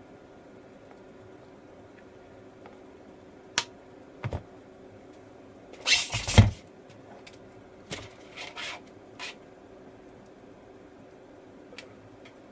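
Handling noises of bare power-supply circuit boards being moved and set down on a cutting mat: a few sharp clicks, then a louder scrape and knock about six seconds in, followed by softer rustling. A faint steady hum runs underneath.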